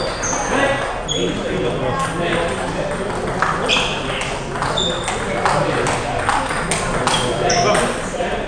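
Table tennis balls clicking against bats and bouncing on tables, several rallies at once giving a rapid, irregular patter of sharp ticks, some with a brief high ring.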